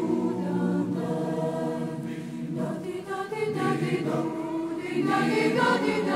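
Background music: a choir singing slow, held chords that change every second or two.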